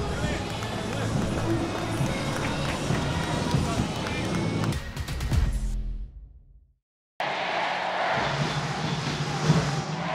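Players' voices mixed with background music, fading out about six seconds in to a moment of silence, then a steady noisy background with faint voices returns about a second later.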